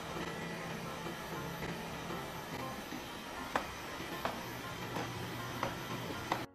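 Xiaomi Mi Robot Vacuum-Mop 1C vacuuming, its suction fan and brushes giving a steady whirring hiss, with a few sharp clicks in the second half.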